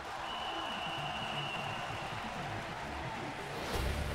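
Large stadium crowd cheering and applauding, a dense steady roar. A steady high tone sounds over it for the first two seconds, and a low rumble comes in near the end.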